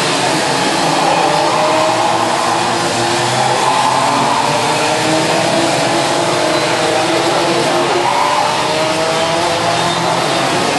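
A pack of racing karts with Rotax 125 Junior Max two-stroke engines running together at race speed. Several engines buzz at once, their pitch rising in overlapping sweeps as they accelerate.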